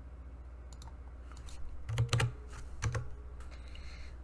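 Typing on a computer keyboard: scattered keystrokes, with a few heavier key knocks about halfway through, over a steady low electrical hum.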